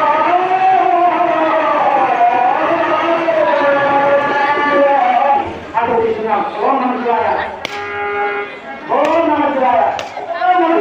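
A voice singing a slow melody with long gliding notes, one note held steadily near the end.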